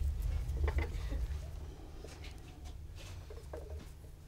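Faint scattered taps and rustles of grogged clay being pressed and smoothed between fingers, over a steady low hum.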